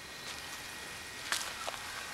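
Steady outdoor background hiss with one light click or knock about a second and a half in, and a fainter one just after.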